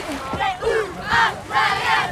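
Several young women shrieking and whooping together in excitement as they splash into shallow sea water. The loudest cries come about a second in and again near the end.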